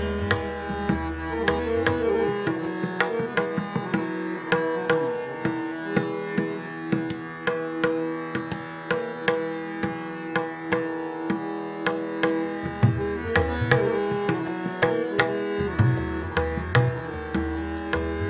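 Hindustani classical instrumental passage with no singing: a harmonium plays a melodic line over a steady plucked tanpura-style drone, with regular tabla strokes.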